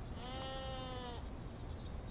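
A single drawn-out pitched call, bleat-like, lasting about a second and arching slightly in pitch before fading.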